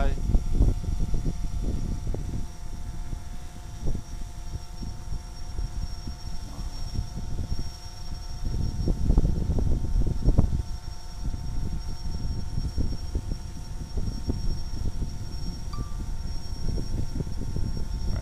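Wind buffeting the microphone in gusts, strongest about halfway through, over the steady hum of a DJI Phantom 3 Standard quadcopter's propellers as it hovers overhead.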